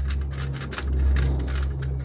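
Aluminium foil crinkling and crackling in quick irregular snaps as a knife is pushed through the foil stretched over a glass and the foil is handled, over a steady low hum.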